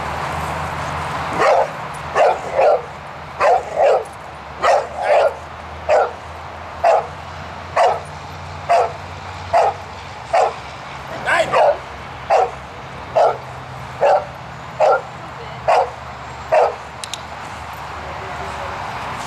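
A boxer dog barking repeatedly at a helper in a hide during a bark-and-hold exercise, about one bark a second, with a few quick double barks; the barking stops near the end.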